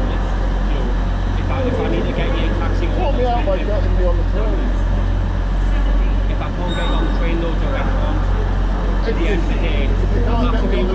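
Steady low hum of a stationary LNER Azuma train standing at the platform with its doors open. Indistinct voices can be heard over it.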